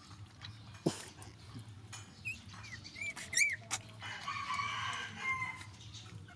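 High-pitched animal calls: four short squeaks that rise and fall in quick succession around the middle, followed by a longer, rougher call of about a second and a half, with a sharp click about a second in.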